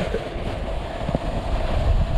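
Snowboard sliding and scraping over wet spring slush, a steady rushing noise, with wind buffeting the microphone.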